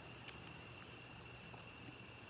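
Faint, steady trilling of crickets, a high continuous sound without breaks.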